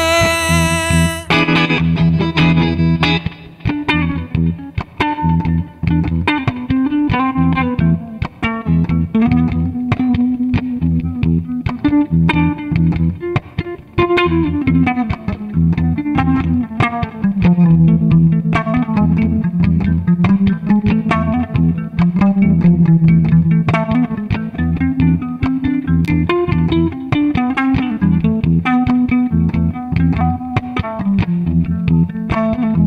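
Solo electric guitar playing an instrumental passage of picked notes over held low notes. A sung line ends about a second in.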